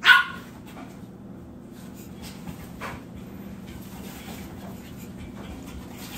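A small black dog gives one short, loud bark right at the start, followed by quieter low background noise with a few faint clicks.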